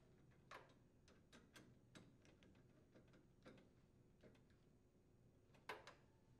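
Near silence broken by faint, irregular metallic clicks and ticks, about seven in all, of a screwdriver driving in the bolt that secures a gas range's burner valve to the gas manifold. The loudest click comes near the end.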